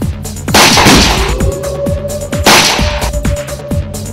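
Two loud gunshot sound effects, about two seconds apart, each with a long echoing tail, over dramatic film background music with a run of pounding drum hits.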